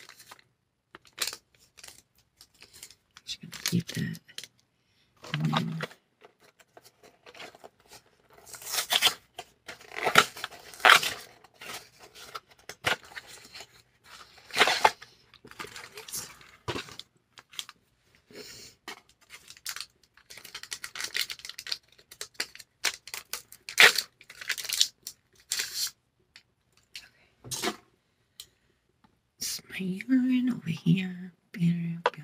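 Wrappers and paper being torn open and crinkled in a run of short rustling bursts, from unwrapping home pregnancy tests.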